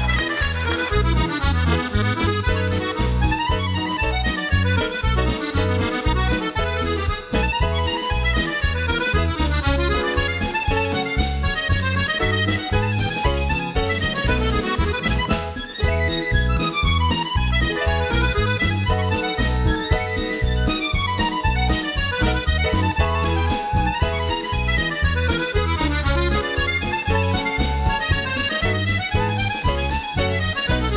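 Accordion playing a lively polka: fast melody runs over a steady, evenly pulsing bass beat.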